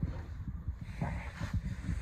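A low rumble with a few faint knocks: handling noise as the camera moves and fabric is set at the machine head.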